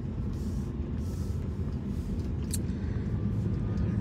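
Steady low rumble of a car heard from inside the cabin, with one brief click about two and a half seconds in.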